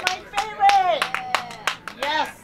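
A small audience clapping in separate, countable claps, with voices calling out over the applause.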